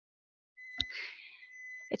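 Microwave oven beeping: one steady high tone lasting about a second and a half, signalling the end of its 20-second heating run, with a sharp click shortly after the tone starts.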